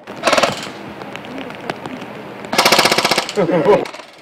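Replica airsoft rifles firing in full-auto bursts of rapid clacking: a short burst just after the start and a longer one, under a second, about two and a half seconds in.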